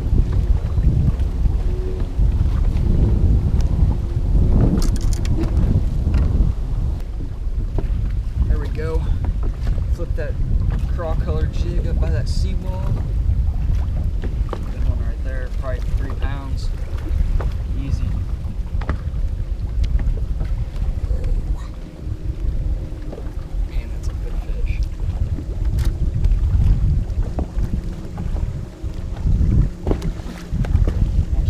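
Wind blowing on the microphone: a steady low rumble.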